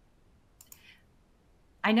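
Near-silent room tone, broken a little over half a second in by a brief, faint click and rustle. A woman starts speaking near the end.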